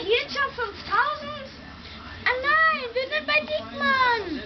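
Children's voices: a boy talking in a high voice whose pitch swings up and down, in short phrases with a brief pause partway through.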